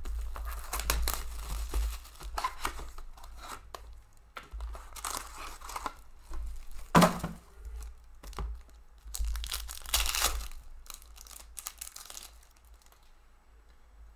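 A 2018-19 SPX hockey card pack being torn open, its foil wrapper ripping and crinkling in a run of irregular bursts, with one sharp tear about halfway through. Quieter rustling of the cards near the end.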